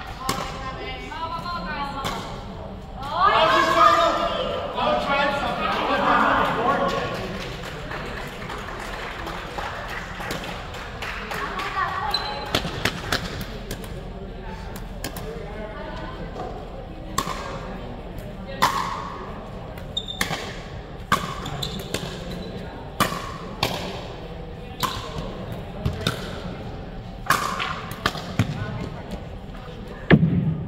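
Pickleball paddles hitting a hard plastic ball in a rally: sharp pops about once a second through the second half. A few seconds in comes a loud stretch of voices.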